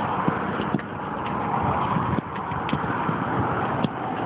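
Steady outdoor background noise picked up by a phone microphone, with scattered small clicks and knocks.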